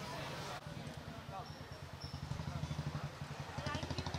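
A vehicle engine idling nearby, a low rapid pulse that grows plainer after the first second. Voices are faint in the background.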